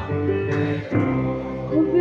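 Acoustic guitar strumming chords, each strum ringing on. Voices start singing near the end.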